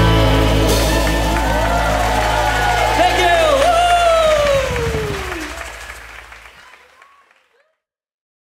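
A live band's last chord ringing out over a held bass note, with the audience cheering in long falling whoops and clapping. The sound fades away to nothing a little before the end.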